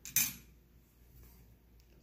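A 10-karat gold ring set down into the metal weighing tray of a digital pocket scale: one short, sharp metallic clink with a brief ring just after the start.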